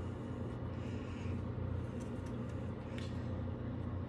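A steady low hum, with a few faint clicks about halfway through and near the end.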